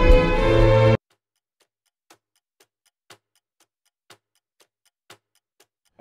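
Orchestral music that cuts off abruptly about a second in, leaving only a clock ticking about twice a second, each louder tick followed by a softer one.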